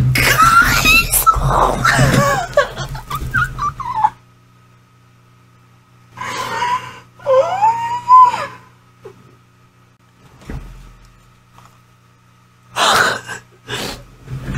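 A woman squealing and shrieking in excitement, high-pitched and wordless. It comes in bursts: a long one over the first few seconds, two shorter ones about halfway through, and a brief one near the end, with a low steady hum underneath.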